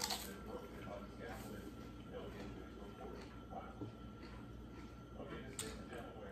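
Quiet room tone with a steady faint hum and soft chewing and mouth noises from a man eating a sandwich, with a light click at the start and another about five and a half seconds in.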